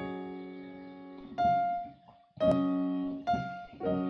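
Piano playing a slow progression of inverted chords with the melody note on top. The opening chord rings and fades, then a melody note is struck about a second and a half in, followed by new chords at about two and a half seconds, three and a quarter seconds and just before the end, each left to ring.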